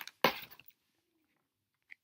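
Supplement packaging being handled: a short, loud crackle and clatter about a quarter second in, as items are moved and a pouch is picked up.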